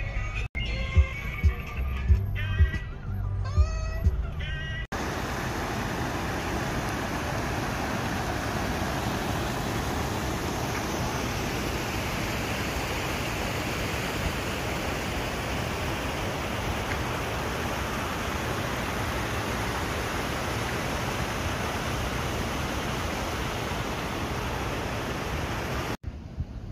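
Music with a beat for about the first five seconds, then a sudden cut to the steady rush of water spilling over small stone cascades into a stream.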